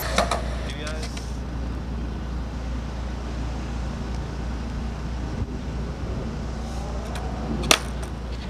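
A steady low rumble, with faint voices in the background and one sharp knock near the end.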